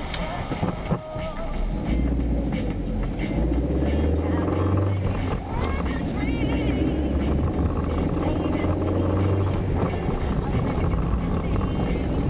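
Car engine and road noise heard inside the cabin as the car pulls away from a stop and drives on. The low rumble grows louder about two seconds in.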